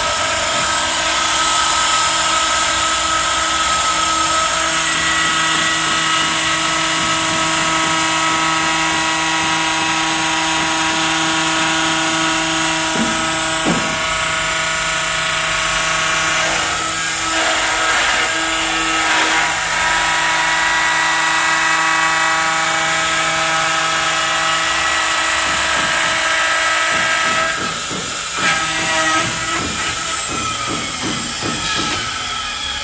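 A profile router's spindle runs with a steady, high, whining tone while its end mill cuts a slot into a white plastic window profile. The cutting noise shifts in the second half, and the level dips briefly near the end.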